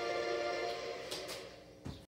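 Videoke machine music playing through the TV on its score screen: held chord tones that slowly fade away, with a short thump near the end.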